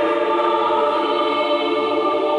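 Church choir singing, holding long sustained chords in a reverberant church.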